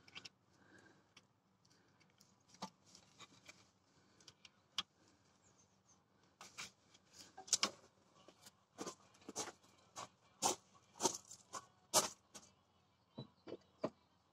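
Faint, irregular small clicks and taps, sparse at first and coming more often in the second half.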